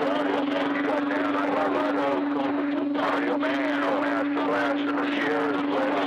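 CB radio speaker receiving skip: a steady low heterodyne tone under several garbled, overlapping voices from distant stations, all coming through the band conditions at once.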